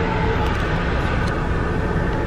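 Steady low rumble of a car running, heard from inside the cabin, with a couple of faint knocks as the phone is handled.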